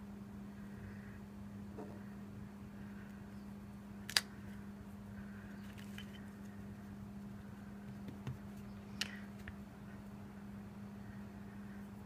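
Clear acrylic stamp block tapping and clicking against a Versamark ink pad and the work surface as a rubber stamp is re-inked and pressed onto cardstock: a few short sharp clicks, the loudest about 4 and 9 seconds in, over a steady low hum.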